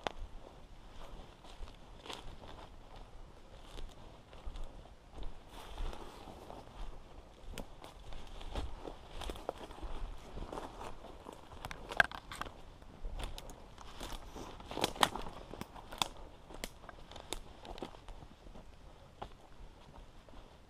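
Footsteps crunching through dry leaves, needles and twigs on a forest floor, an uneven run of rustles and cracks, with the sharpest snaps about twelve and fifteen seconds in.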